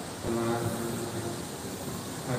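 A man's voice holding one drawn-out, steady note for about a second, over room noise.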